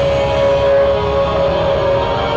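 Deathcore band playing live, recorded from the crowd: heavily distorted guitars and drums under one long held high note.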